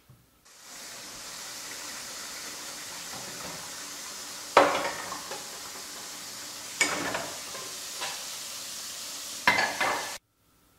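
Kitchen tap running hot water into a stainless steel sink full of pots and pans, filling it for washing up; the steady flow starts about half a second in. Dishes and pans knock and clatter in the sink three times, loudest about halfway through.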